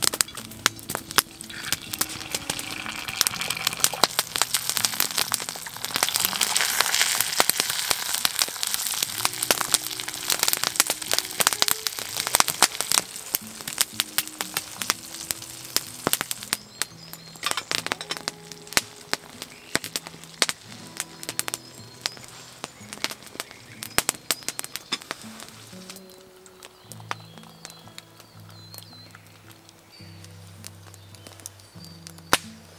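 Egg frying in a cast iron skillet beside a sausage over an open log fire: a sizzle that swells over the first few seconds, laced with frequent sharp crackles and pops from the burning logs. The sizzle fades about halfway through, leaving the fire crackling, under soft background music with slow low notes.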